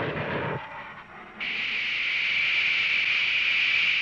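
Jet aircraft noise on the film's soundtrack: a broad rush that fades out within the first second, then a steady high-pitched hiss that starts abruptly about a second and a half in.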